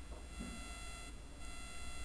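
Quiet room tone: a steady low hum with a faint, steady high-pitched whine that drops out briefly about a second in.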